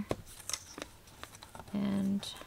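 Paper being handled and lined up on a paper trimmer: light, scattered clicks and rustles of paper and plastic. A brief hummed voice sound comes near the end.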